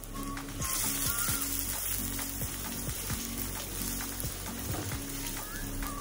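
Chopped onion sizzling in hot cooking oil in a wok, a steady frying hiss that gets louder about half a second in.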